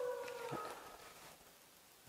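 A long, high, steady howl, falling slightly in pitch, fades out within the first half-second; then a faint click and quiet room tone.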